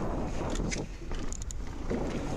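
Mountain bike rolling down a dirt trail: a steady rumble of knobby tyres on packed dirt with wind on the microphone, and a few light clicks and rattles from the bike.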